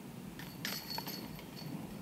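A putted golf disc strikes the hanging chains of a disc golf basket: a metallic clash about half a second in, followed by a rattling chain jingle that dies away over the next second.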